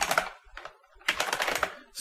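Typing on a computer keyboard: a short run of keystrokes, a pause of about half a second, then another quick run of keystrokes from about a second in.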